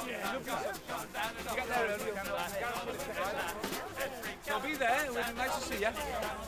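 Several people's voices overlapping at once, lively and continuous.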